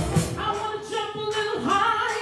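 Church praise team of women singing a gospel worship song together into microphones, held notes with short breaks between phrases.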